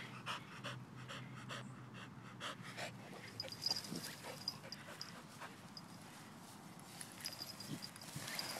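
A dog panting hard, about three quick breaths a second, easing off after about three seconds.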